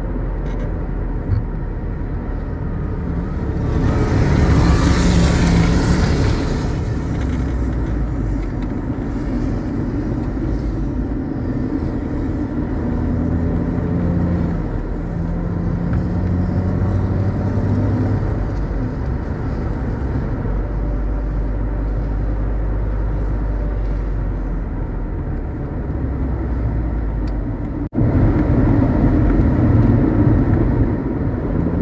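Mercedes-Benz W124 on the move: steady engine hum with tyre and wind noise, the engine note shifting a little as it drives. A rushing swell rises and fades about four to six seconds in, and the sound cuts out for an instant near the end.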